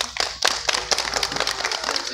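A crowd clapping: a dense, irregular patter of hand claps.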